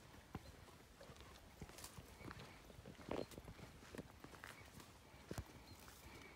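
Horses at the roadside: faint, irregular hoof clops and knocks, with no steady rhythm.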